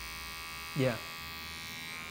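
Barber's electric hair clippers running with a steady, even buzz.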